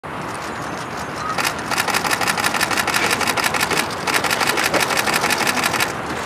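Camera shutters firing in rapid bursts, about ten clicks a second, starting about a second and a half in with a short break near the middle, over a steady background traffic hum.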